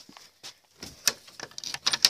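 A handful of short, irregular clicks and knocks, the rattle of handling a wire-mesh rabbit hutch.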